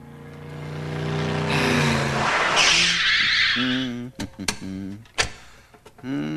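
Comedy sound effect of a car speeding up, its engine growing louder, then tyres screeching as it skids to a stop. A few short, sharp clicks follow near the end.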